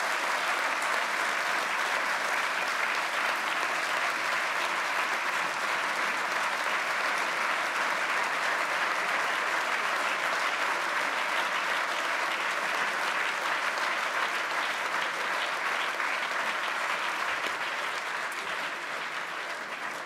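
Large audience applauding: many people clapping at once in a steady, dense wash that dies away near the end.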